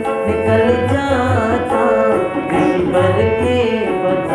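A devotional bhajan: a man singing over a harmonium's sustained reedy chords, with a drum keeping a steady beat underneath.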